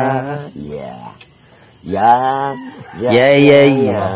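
A man's voice close up making three drawn-out, sing-song wordless calls, the last the loudest.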